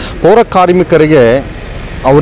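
A man speaking into a microphone, then pausing near the end, when only steady background noise remains.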